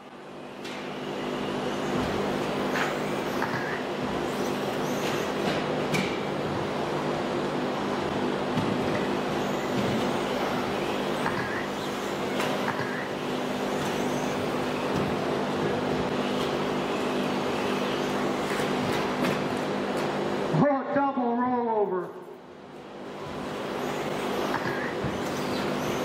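Electric radio-control cars racing on an indoor track: a steady mix of small motor whine and running noise, with short rising revs as cars accelerate out of corners. About 21 s in there is a brief, louder sound that falls in pitch.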